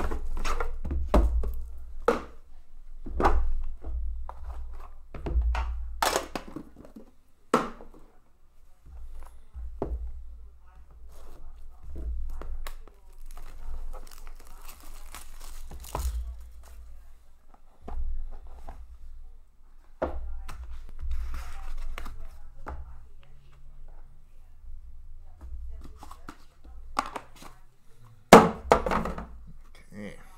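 Cardboard packaging of a hockey trading-card box being opened and handled by hand: irregular thunks, knocks and crinkling as the box is worked open and the inner box slid out, with the loudest knock near the end.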